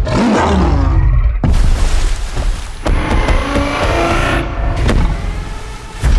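Cinematic sound effects of giant robots in action: mechanical whirring that rises and falls in pitch, with sharp heavy hits about a second and a half in, near three seconds and near five seconds, over a deep continuous rumble.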